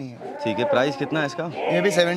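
Large Kota goat buck bleating in long, low-pitched calls.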